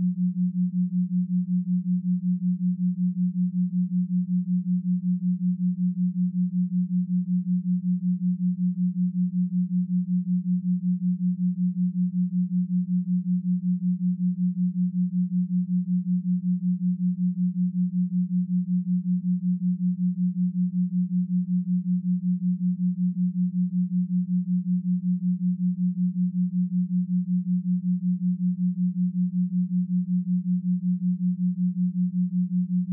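Binaural-beat tone: a single steady low pure tone that pulses evenly in loudness several times a second.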